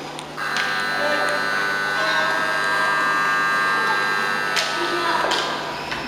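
Ice rink buzzer sounding one steady blast of about five seconds, starting about half a second in.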